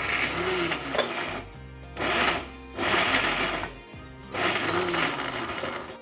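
Electric mixer grinder run in four short pulses of about a second each, with brief pauses between them, over background music.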